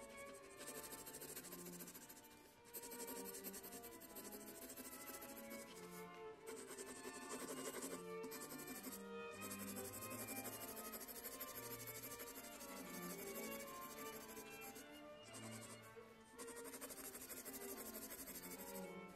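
Pencil graphite scratching back and forth on sketch paper in rapid shading strokes, pausing briefly now and then as the pencil lifts. Soft background music plays underneath.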